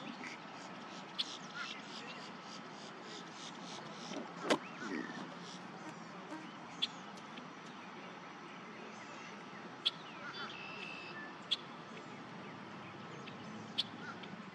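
Outdoor ambience with scattered short, high bird chirps and calls over a faint steady background hum, and one sharp click about four and a half seconds in.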